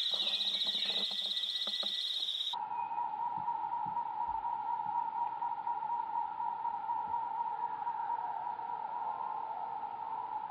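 Insects buzzing: a high, fast-pulsing buzz that switches abruptly, about two and a half seconds in, to a steady, lower-pitched drone.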